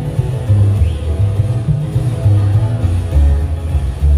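Live acoustic string music: two acoustic guitars played over an upright double bass, the bass notes changing about twice a second.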